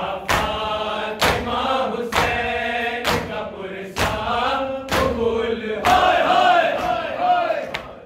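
A group of men chanting a Shia nauha (lament) in unison, kept in time by matam: their open hands slapping their chests together about once a second.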